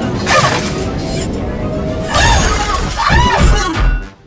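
Cartoon soundtrack: background music with sound effects, including rushing bursts, several rising-and-falling pitched cries, and a heavy low impact near the end as the two robots hit the ground.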